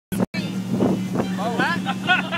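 A pontoon boat's motor runs at a steady, even drone, with people's voices over it about one and a half seconds in.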